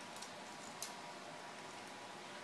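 Faint handling clicks of a microphone mount being screwed onto the threaded top of a mic stand, with one sharper click a little under a second in, over a quiet room hiss.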